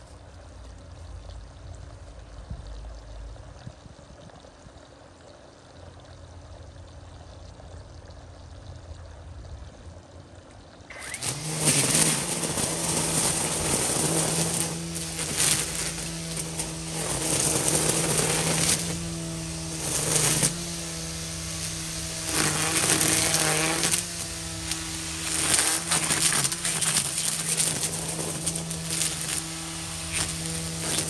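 After about eleven quiet seconds, an EGO Power+ battery string trimmer starts and runs steadily, its line cutting through weeds, the level rising and dipping as it works.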